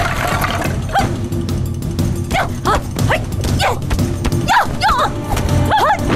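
Fight-scene audio: a quick series of short, sharp shouts and yells from the fighters, with scattered hits, over dramatic background music.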